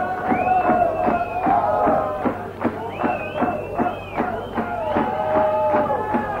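Live rock band playing the instrumental opening of a song: a steady drum beat under a held, sliding high melody line and a lower line.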